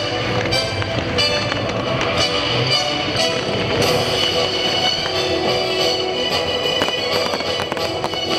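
Fireworks bursting and crackling in a string of sharp bangs over loud music.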